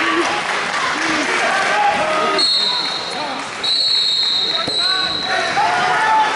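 Coaches and spectators shouting and calling out in a large echoing hall, with two shrill steady whistle blasts midway, a short one and then a longer one, typical of a wrestling referee's whistle stopping the action.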